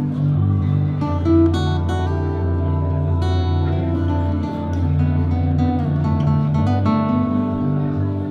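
Solo guitar played live, a mix of strummed chords and single picked notes over low notes that ring on.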